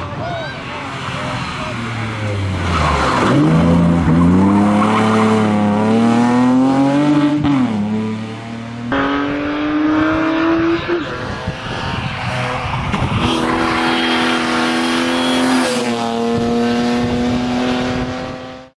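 BMW E36 320i rally car's straight-six engine revving hard, its pitch climbing steeply and dropping sharply at a gear change. The sound then changes abruptly to a sustained high-revving note that climbs again in steps.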